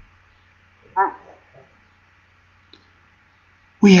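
A brief high-pitched animal cry about a second in, over a low steady hum, with a soft click later on.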